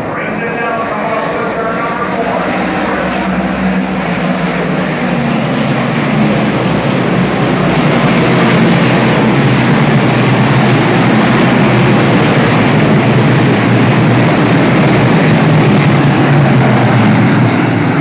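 A pack of DIRT Big Block Modified dirt-track race cars, their big-block V8 engines running hard together at racing speed. The sound builds over the first several seconds as the field comes past, then holds at a loud, steady roar of many engines.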